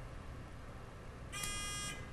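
Quiz-show buzzer sounding once near the end: a short electronic tone of about half a second. It signals that a player has buzzed in to answer.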